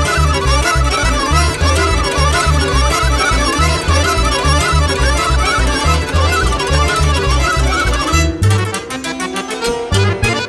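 A Romanian Gypsy taraf band plays a fast tune live: the violin and accordion carry a quick, wavering melody over a steady pulsing bass-and-chord beat. About eight seconds in the bass beat drops out for a moment before coming back.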